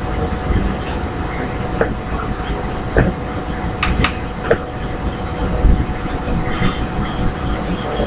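Steady low rumbling background noise with a faint steady hum, broken by a few light clicks.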